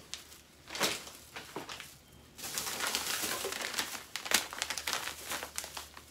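Plastic food pouches crinkling as they are handled. There is a short rustle about a second in, then steady crinkling from about two and a half seconds until shortly before the end.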